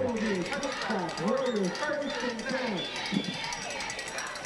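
Crowd of spectators in the stands, many voices talking and calling out at once and overlapping.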